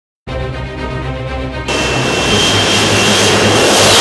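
Background music with a steady bass, and about a second and a half in the loud roar of an F-35B's jet engine comes in over it, with a high steady whine that dips near the end. The jet is in short-takeoff/vertical-landing configuration with its lift-fan door open, and the roar cuts off suddenly just after.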